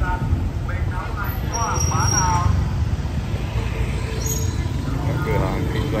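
Motorbike and car traffic passing close on a narrow street: a steady low engine rumble, with people's voices in the street around it.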